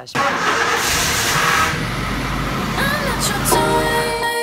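An old Suzuki Vitara SUV's engine starting and then running with a steady low rumble. Music comes in near the end.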